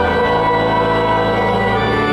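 Church organ playing long, held chords, the notes changing about a quarter second in.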